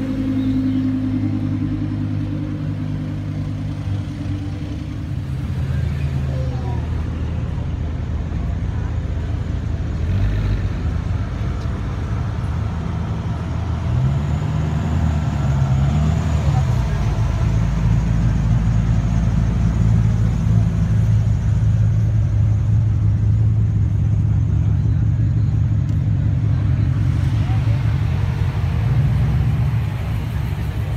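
Supercar engines running at low speed as the cars crawl past one after another, a steady low engine note with a brief rise and fall in pitch about halfway through. The sound gets louder from about halfway on.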